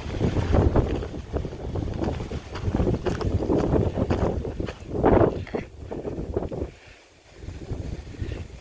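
Wind buffeting the microphone in uneven gusts, a low rumbling noise that swells and fades, dropping to a brief lull near the end.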